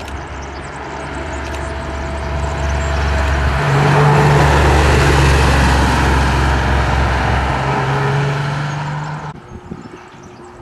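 Classic Porsche 911's air-cooled flat-six engine under load as the car climbs through a hairpin and passes close by. The engine gets louder to a peak around the middle, its pitch shifting once partway through, then fades as the car pulls away. The sound cuts off abruptly near the end.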